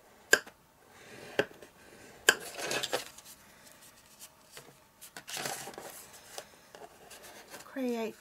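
Scoring stylus tapping and scraping along the groove of a scoring board as card stock is scored: three sharp clicks in the first couple of seconds, then short scrapes and the rustle of the card being handled.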